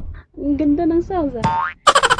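Playful cartoon-style boing: a wavering pitched tone that slides down and then sweeps quickly up in pitch.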